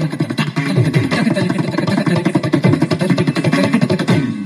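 Carnatic dance music: a fast, dense run of drum strokes in a steady rhythm, the kind of percussion that accompanies Bharatanatyam.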